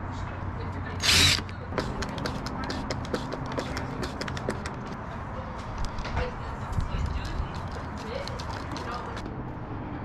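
A short burst from a Ryobi cordless drill about a second in, then a long run of light, irregular clicks as a hand screwdriver drives screws into a metal mounting bracket.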